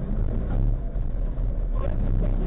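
Race car engine idling with a steady low rumble, heard from inside the cockpit.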